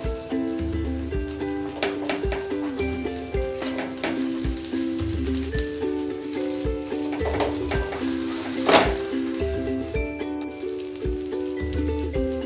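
Background music with a steady beat, over a flat spatula scraping and chopping against a non-stick tawa as a cheese dosa is cut into strips, with the dosa faintly sizzling on the hot pan. One scrape, late on, is louder than the rest.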